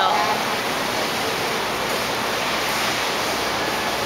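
Steady rushing and splashing of water into a plastic tub as a chicken is bathed.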